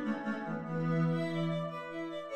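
String quartet music in D major, rendered by Garritan ARIA Player sampled string instruments: two violins, viola and cello playing softly, with a long held low note under the upper parts.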